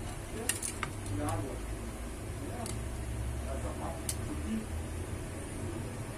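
A few light clicks and taps as a smartphone's plastic back cover and loose display panel are handled on a rubber work mat, over a steady low hum.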